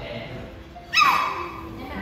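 A Chihuahua giving one sharp, high yip about a second in, its pitch dropping as it fades.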